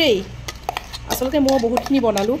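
A steel pot clinks and knocks several times as it is handled and tipped to pour into a small cup.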